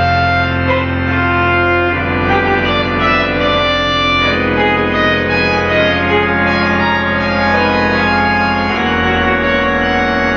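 Pipe organ playing slow sustained chords over a held low pedal note, the chord changing about two seconds in and again near the end.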